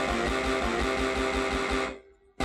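Live electronic music: a dense sustained chord-like sound over a fast, even low pulse, cutting off abruptly just before the end.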